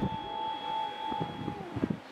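A single steady electronic tone, held for about a second and a half and then cut off, over low background noise with a few short knocks near the end.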